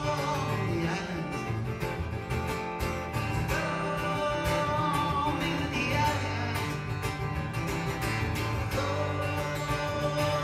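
Solo acoustic guitar played live, with a sung melody over it in places.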